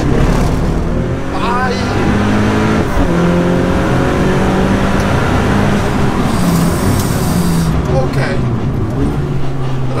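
Dallara Stradale's turbocharged 2.3-litre four-cylinder engine running on track, heard from inside the cabin. Its pitch shifts up and down in steps several times as the revs change.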